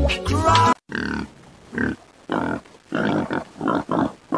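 Music cuts off suddenly just under a second in, followed by a string of short grunting calls, about two a second.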